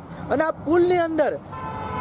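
A vehicle horn sounding one long steady note, starting about halfway through and carrying on under a man's talking.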